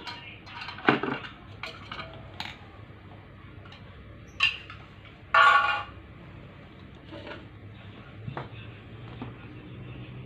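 Metal clinks and taps as a screwdriver knocks against the metal pipes and panels of a chest freezer's compressor compartment. There are a few sharp strikes in the first two and a half seconds, and a louder ringing clang about five and a half seconds in.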